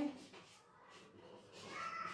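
Quiet room, then near the end a single cat meow that rises and then falls in pitch.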